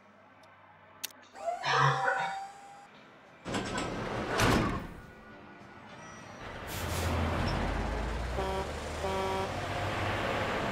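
Vehicle sound effects over background music: a short loud clatter about a second and a half in, a vehicle whooshing past around four seconds in, then a big rig's engine rumbling in from about seven seconds, with two short horn honks near nine seconds.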